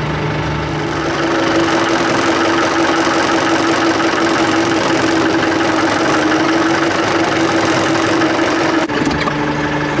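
Kubota tractor's diesel engine running, heard from inside the cab, with a steady higher whine that comes in about a second in and drops away near the end.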